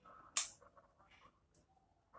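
Pruning scissors snipping a thin jaboticaba bonsai twig: one sharp click about half a second in, followed by a fainter tick near the end.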